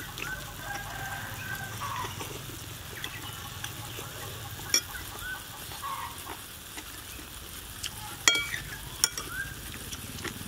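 A person slurping and chewing rice noodles, with a metal spoon clicking against a plate a few times, loudest about 8 seconds in. Chickens cluck in the background.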